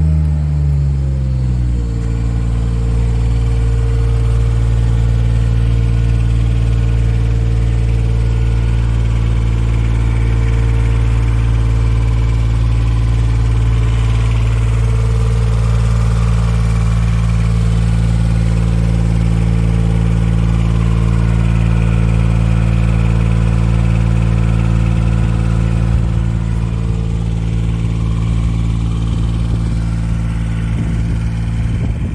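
Engine of a Palazzani Ragno TSJ23 tracked spider lift dropping from raised revs to idle over the first two seconds, then idling steadily.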